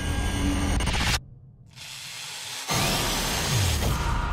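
Horror-trailer sound design: a loud, harsh screeching noise that cuts off abruptly about a second in, a quieter low stretch, then another loud noisy swell with a falling low tone near the end.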